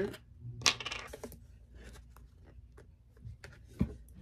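Small hard clicks and taps from handling manicure supplies. There is one sharp click a little under a second in, a scatter of light ticks after it, and a soft thud near the end.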